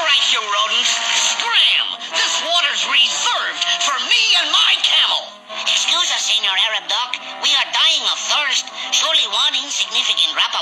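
Cartoon soundtrack: a character's voice, with no clear words, over background music, with a short break about five seconds in.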